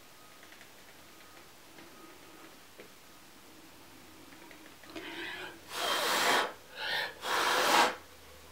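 After a few quiet seconds, a person blows hard on the board of melted encaustic wax in rushes of breath, pushing the wax across the surface in a Dutch pour. There are two strong blows of about half a second or more each, with two weaker, shorter puffs or breaths around them, near the end.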